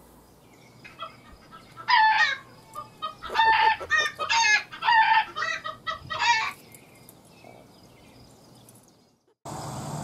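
Chickens calling: a run of about six loud, short calls between about two and six and a half seconds in.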